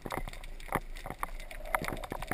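Underwater ambience recorded through a camera housing: scattered, irregular clicks and crackles over a low steady rumble.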